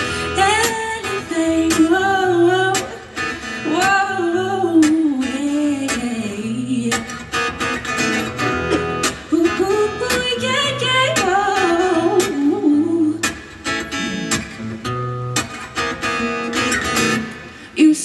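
A woman singing a pop song live while strumming an acoustic guitar, the sung phrases broken by short instrumental gaps.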